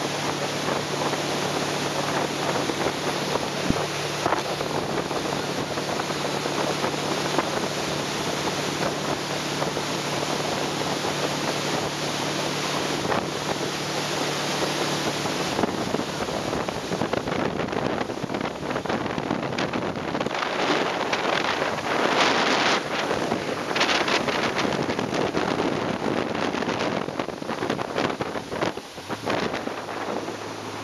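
Tow boat's engine running steadily under way, with water rushing in its wake and wind buffeting the microphone. The low engine hum fades about halfway through, and the wind gusts grow heavier in the second half.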